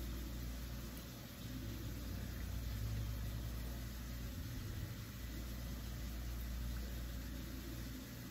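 Steady low background hum with no distinct events, quiet room tone.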